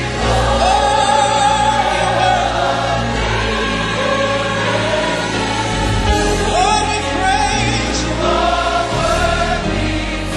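Choir singing the gospel-style praise chorus line 'You are worthy to be praised' over steady instrumental accompaniment.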